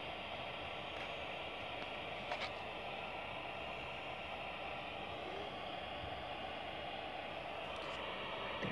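Steady hiss of static from a ghost-box radio session, with one faint click a little over two seconds in.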